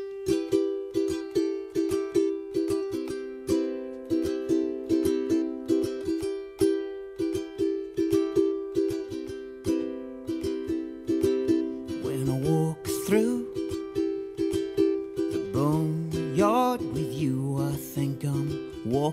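Ukulele strummed in a steady rhythm of repeated chords. A man's singing voice joins over it about twelve seconds in.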